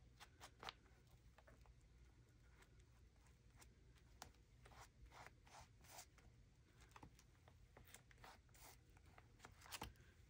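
Near silence, with faint scattered taps and rustles of fingertips pressing and smoothing a freshly glued paper piece onto a journal page.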